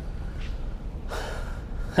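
A man's audible breath out, a short sigh about a second in, over a steady low room hum.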